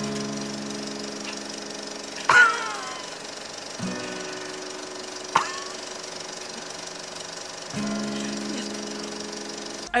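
Background music of long held chords under a comedy cutaway. Two short sudden sound effects break in: the louder one about two and a half seconds in, falling slightly in pitch, and a sharp hit with a short ringing tone about five and a half seconds in.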